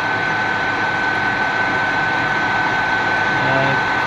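Metal lathe running at a slow 110 RPM with a steady high whine over its running noise, while a long-series 10 mm drill takes a light starting cut into grade 5 titanium so that the hole runs true.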